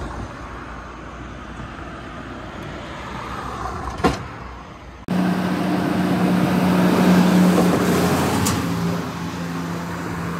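Road traffic passing on a bridge: steady traffic noise, a sharp click about four seconds in, then a sudden jump to louder passing traffic with a low engine hum that swells and eases off.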